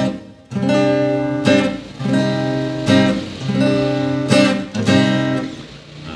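Steel-string Cort acoustic guitar strummed, a C-sharp chord tried against the song's bass note: about six chords struck in turn, each left ringing briefly before the next.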